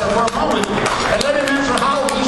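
Many people talking at once in a large hall, a busy murmur of overlapping voices with scattered knocks.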